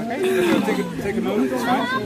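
Indistinct talking: conversation that the recogniser could not make out.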